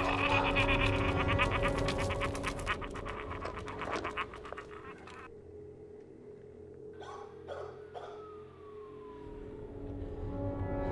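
Dark experimental soundtrack drone: steady low sustained tones under a rapid stutter of clicks that thins out and stops about halfway, then a few soft knocks and a tone sliding slowly downward near the end.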